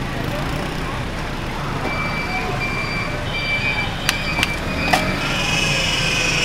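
Busy street ambience: steady traffic noise from road vehicles, with a few sharp clinks about four to five seconds in, glass or metal being knocked at a drinks stall.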